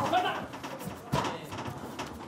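A few short thuds from two fighters grappling in a clinch in the ring, the loudest about a second in, over faint hall noise.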